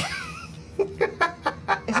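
Person laughing in quick, repeated bursts, starting just under a second in, after a short breathy sound with a wavering pitch.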